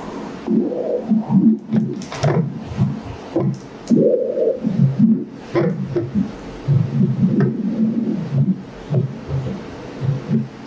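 Pulsed-wave Doppler audio from a GE LOGIQ E9 ultrasound machine sampling the main renal vein: a whooshing flow sound that swells and fades irregularly. The flow is a little bit pulsatile, because the vein lies near the inferior vena cava.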